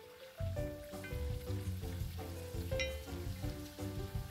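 Dasheen (taro) slices sizzling as they fry in hot oil in a cast iron pan, under background music with a bass line.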